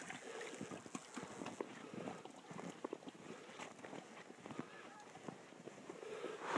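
Faint footsteps crunching through snow: a scatter of small, irregular crunches and clicks.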